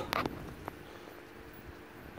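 Quiet outdoor background in a pause of talk: a faint steady hum with a short click just after the start and a fainter one a moment later.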